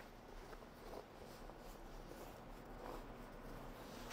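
Faint rustling and handling of a canvas cover being pulled off a slide-out camp kitchen, barely above quiet room tone.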